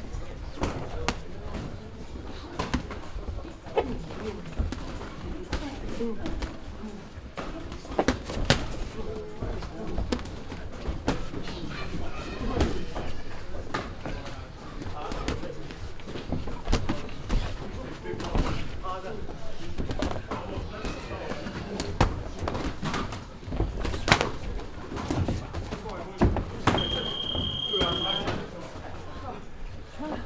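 Muay Thai sparring: irregular sharp thuds and slaps of punches and kicks landing on boxing gloves, shin guards and bodies, with voices in the gym behind. Near the end a steady electronic beep of about a second, a round timer signalling the end of the round.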